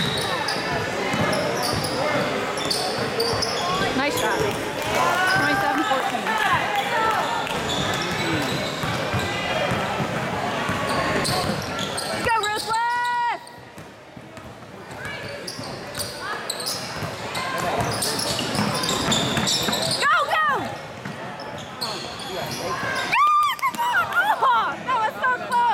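Basketball game in a gym: a ball dribbling on the hardwood court under echoing chatter and calls from players and spectators. A held high tone sounds about halfway through, after which it goes quieter for a few seconds, and another comes near the end.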